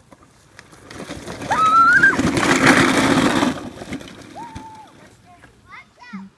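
Plastic wheels of a child's low ride-on trike rolling fast down a grassy slope, a loud rushing rumble that builds about a second in and fades after about two and a half seconds. A child's short high call rises over it, with another brief call near the end.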